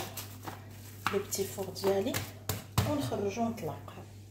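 A woman's voice speaking, with a couple of sharp clicks about two and a half seconds in and a steady low hum underneath.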